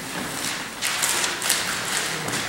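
Rustling, shuffling and light tapping of people getting up from a table and gathering papers, busier from about a second in, with one sharper knock near the middle.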